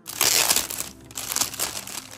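Clear plastic shipping bag being handled and crinkled. The rustling is loud from the start, dips briefly about a second in, then swells again.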